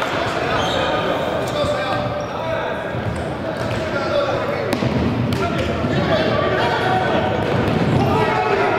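Sound of a futsal game echoing around a large indoor sports hall: players' indistinct calls and a few sharp thuds of the ball being kicked, two of them close together about halfway through.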